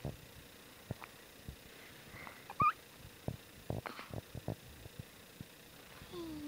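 Newborn baby's small sleep noises: a short rising squeak about halfway through, among scattered soft clicks.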